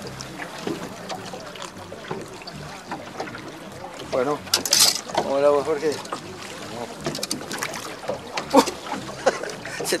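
Steady wind and river-water noise on an open fishing boat, with short bits of voice in the middle. About eight and a half seconds in comes a short sharp splash-like hit, and another just before the end, as the released boga drops back into the river.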